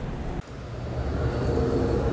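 Outdoor street ambience: a steady low rumble of vehicle traffic that comes in after a brief dip about half a second in and grows slowly louder.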